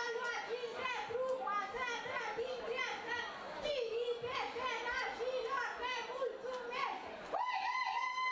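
A woman singing solo into a microphone in a high voice, with pitch that slides and wavers between held notes, in the manner of a traditional Romanian wedding song; near the end she holds one long, steady high note.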